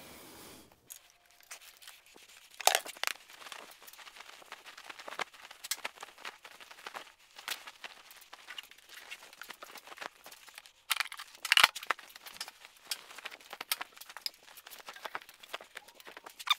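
A fabric motorcycle cover rustling as it is pulled and spread over a motorcycle, in irregular handling bursts that are loudest about three seconds in and again around eleven seconds.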